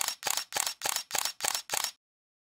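A camera shutter firing in a rapid burst: eight crisp clicks, about four a second, that stop suddenly.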